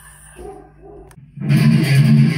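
Quiet for the first second and a half, then a distorted electric guitar cuts in suddenly, playing a fast death-metal rhythm riff.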